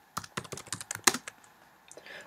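Typing on a computer keyboard: a quick, uneven run of key clicks for about the first second and a half, then a short pause near the end.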